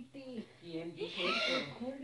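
Soft, indistinct voice sounds: someone talking or vocalizing under their breath, words not made out, with a breathy hiss about a second in and a short rising glide in pitch.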